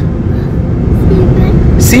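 Low, steady rumble of a car's engine and road noise heard inside the cabin.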